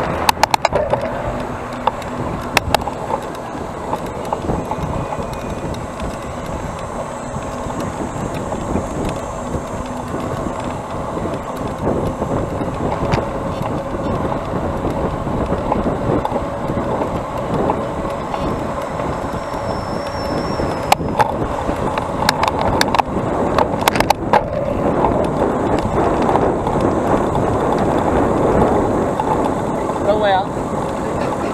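Steady rumble and rush of a bicycle rolling along a paved path, picked up by a bike-mounted action camera, with car traffic passing on the road alongside. A few sharp knocks come near the start and again in a cluster about two-thirds of the way through.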